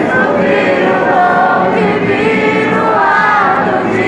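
A large congregation singing a hymn together in many voices, accompanied by acoustic guitars.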